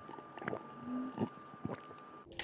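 A person gulping water from a wide-mouth plastic water bottle: a few short swallows, spaced roughly half a second apart.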